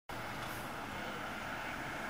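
Steady, even background noise with a low hum underneath and no distinct event.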